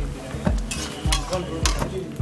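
A slotted metal spatula stirring a sauce in a wok, scraping and knocking against the pan about twice a second.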